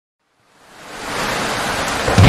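Intro sound effect: a hiss of static-like noise that fades in from silence about half a second in, then holds steady.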